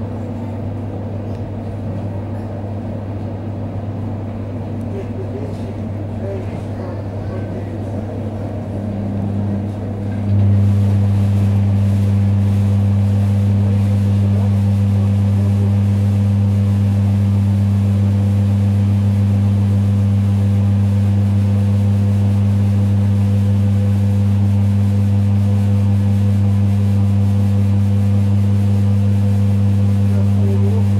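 Inside a moving ЭД9Э AC electric multiple unit: a steady low electric hum from the train's traction equipment over the running noise of the carriage. About ten seconds in, the hum abruptly grows louder and holds at that level.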